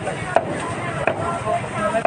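Knife chopping on a cutting board: three sharp strikes spaced about a second apart, over market chatter.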